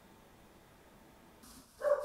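Near silence for most of the time. Faint background noise comes in, and near the end a short, steady, high-pitched animal whine starts.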